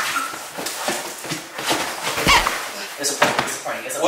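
Two men wrestling on a leather couch: short strained vocal sounds and grunts over repeated thumps and scuffing of bodies against the cushions.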